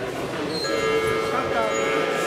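Mixed voices chattering in a large, echoing sports hall. About half a second in, a steady held tone with several pitches stacked together starts and continues to the end.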